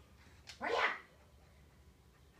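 A single short, rising bark-like yelp about half a second in, opening with a click.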